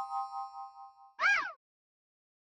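Title-card sound effects: a ringing chime chord fades away with a wavering pulse. Just over a second in comes a short whistle-like chirp that rises and then falls in pitch.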